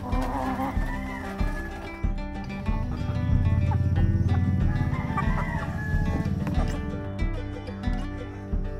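A rooster crowing twice, about half a second in and again around five seconds in, over background music with a steady beat.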